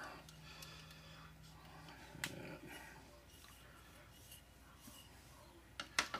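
Faint handling sounds of a rag and plastic model parts: light rustling with two small clicks, one about two seconds in and one near the end, over a brief low hum in the first two seconds.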